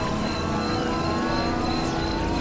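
Dense layered experimental electronic music: several tracks sounding at once, blended into a steady noisy drone, with a few tones gliding slowly upward through it.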